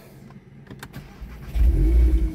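Volkswagen Golf 8 R's turbocharged 2.0-litre four-cylinder starting through its titanium Akrapovič exhaust. A few light clicks come first, then the engine catches about a second and a half in with a loud, low flare of revs.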